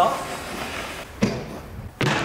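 A portable bike jump ramp with a wooden deck and metal legs being handled and set down: a short shuffling rustle, then one sharp knock about a second in.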